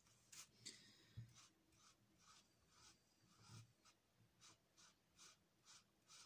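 Felt-tip marker scratching on paper in short back-and-forth colouring strokes, faint and regular, about three strokes a second.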